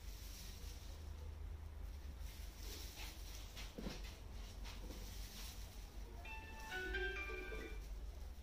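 Low steady hum with faint soft strokes of a tint brush spreading straightening cream through hair. About six seconds in, a short run of steady electronic tones at several pitches, like a brief tune, plays for under two seconds.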